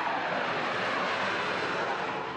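Jet airliner climbing out after takeoff, its engines at takeoff power giving a steady rushing jet noise.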